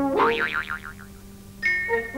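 Cartoon boing sound effect: a springy tone that warbles up and down several times and dies away within about a second. Music comes back in near the end.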